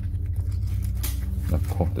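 Low, steady rumble of a big plane flying by overhead, with a brief rustle of handled plastic about a second in.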